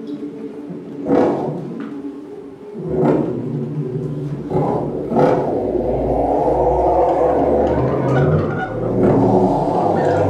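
Live electronic music from a laptop ensemble: layered synthesized drones with swelling noisy surges about one, three and five seconds in, thickening into a dense, loud texture with a deep low rumble in the second half.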